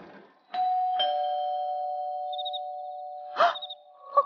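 A two-tone ding-dong doorbell chime: a higher note strikes about half a second in, a lower one about a second in, and both ring on and slowly fade. A brief sharp sound comes near the end.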